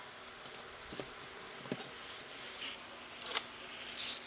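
Faint handling sounds of paper tape being laid and pressed onto a canvas: a few soft taps, and a sharper click a little after three seconds, over a steady low room hum.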